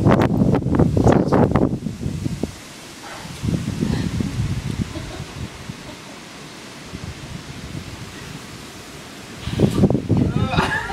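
Storm wind gusting and buffeting the microphone, loudest in the first two seconds and again about four seconds in, then easing to a steady low rush.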